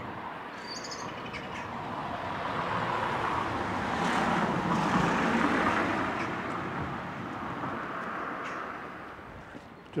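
A car passing along the road: tyre and engine noise that grows to a peak about halfway through and then fades away.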